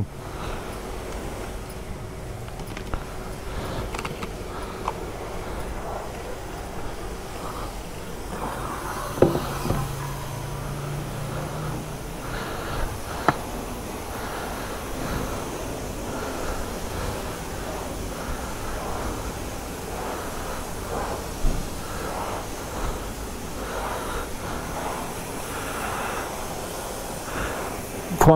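Self-service car-wash high-pressure lance spraying a dirty motorcycle on the dirt-loosening program: a steady hiss of the water jet spattering off the bike, with a few sharp clicks along the way.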